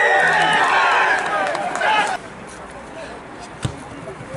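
Several people shouting at once on a rugby pitch, cut off abruptly about two seconds in; then quieter open-air background with a single thud near the end.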